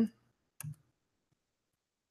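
A single short click a little over half a second in, from the slide being advanced on the presentation; otherwise near silence.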